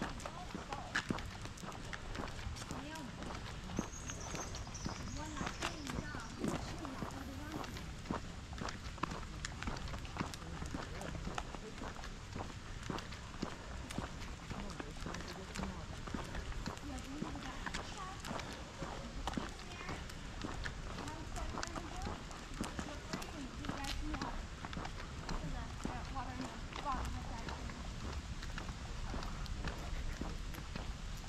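Steady footsteps of people walking with a dog on a paved road and gravel, with faint talking underneath.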